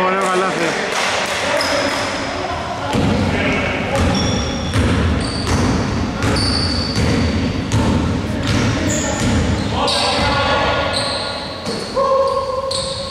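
Basketball bouncing on a hardwood gym floor, with short high sneaker squeaks, echoing in a large hall.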